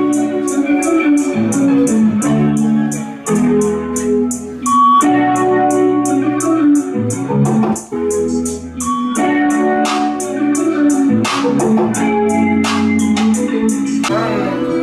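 Instrumental hip-hop beat played back over studio monitors, with no vocal on it: quick high ticks about three to four a second over deep bass notes and a melody of pitched notes.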